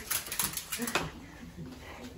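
A small dog's claws clicking on a wooden floor as it moves down the hallway, a quick run of clicks in the first second, then quieter.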